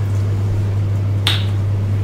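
A pause between spoken sentences filled by a steady low hum, with one short, hissy click about a second and a quarter in.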